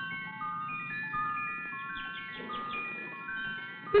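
Orchestral music bridge between scenes of a radio drama: a slow, high melody of held, overlapping notes, with a brief flurry of quick notes about halfway through. The sound is narrow and dull-topped, as on an old broadcast recording.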